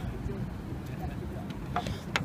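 Outdoor background: a steady low rumble with faint distant voices, and a light click near the end.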